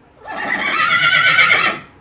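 A horse whinnying: one high-pitched call lasting about a second and a half, held fairly level.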